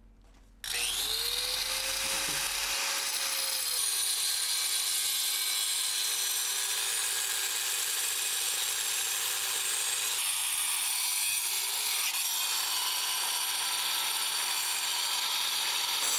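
Corded angle grinder with a diamond blade cutting through an old cast iron drain pipe. It starts about half a second in, its whine rising as the motor spins up, then drops in pitch as the blade bites into the iron and grinds steadily from there on.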